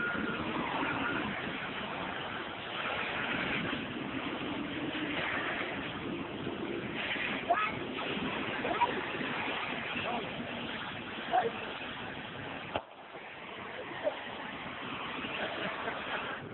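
Gas welding torch flame burning with a steady hiss while it heats the gunpowder-packed torch tip, with a few short sharp pops. The hiss drops off abruptly about 13 seconds in.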